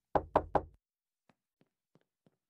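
Three quick knocks on a front door, about a fifth of a second apart, followed by a few faint footsteps.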